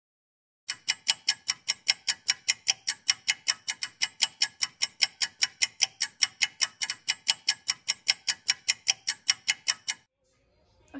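Rapid, evenly spaced ticking like a clock sound effect, about four to five ticks a second, starting just under a second in after a brief silence.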